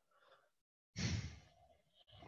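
A man's short sigh into the microphone, one breathy exhale about a second in.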